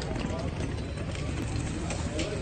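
A horse galloping hard on arena dirt, its hoofbeats heard under a steady background of crowd voices and chatter.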